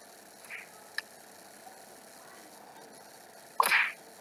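Sound effects from a stick-figure animation coming through a laptop's speakers: a few light clicks, then one short loud burst near the end.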